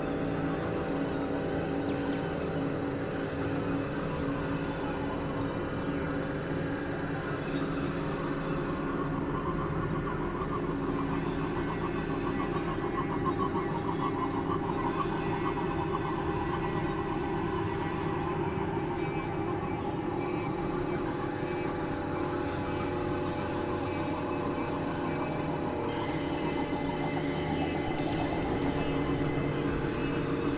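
Dense, layered experimental drone music: many sustained tones stacked over a grainy, rumbling noise texture, holding a steady level. A faint high tone joins near the end.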